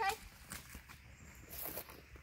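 A single spoken "okay", then near silence with faint rustling.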